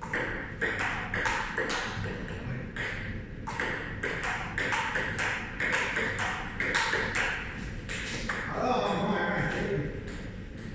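Table tennis rally: the celluloid-type ball clicking off the paddles and bouncing on the table, a steady run of sharp pings at about two hits a second. A short burst of a man's voice comes near the end.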